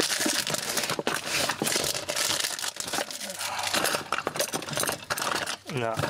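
Rummaging by hand through a cluttered toolbox: plastic bags crinkling and tools and cables knocking and rattling against each other in a steady jumble of small clicks.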